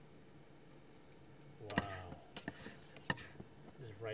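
A rice paddle clacking against a plate and pot as rice is scooped and served: two sharp clacks a little over a second apart, with lighter taps between, over quiet room tone.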